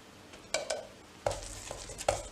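Paintbrush being worked in a paint kettle: a few sharp knocks and clinks of the brush against the kettle, starting about half a second in.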